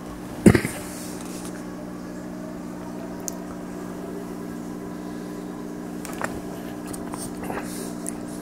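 A man sipping and swallowing a drink from a paper coffee cup, with faint mouth and swallow sounds, over a steady low mechanical hum. A single sharp thump sounds about half a second in.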